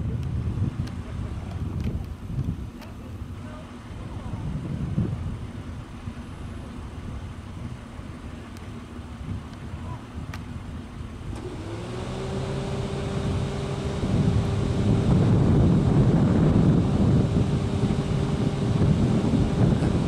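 Faint low outdoor rumble, then from about halfway through a motor vehicle's engine comes in as a steady hum, growing louder over a few seconds and then holding steady.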